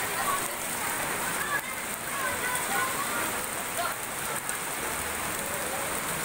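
Heavy rain falling steadily on a paved street and nearby surfaces, a dense, even hiss of water.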